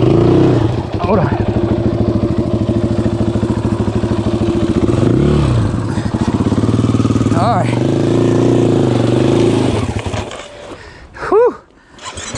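KTM 500 EXC-F single-cylinder four-stroke dirt bike engine revving up and down repeatedly as the bike is crawled up a steep climb on the clutch, then cutting out about ten seconds in. A brief loud sound follows near the end.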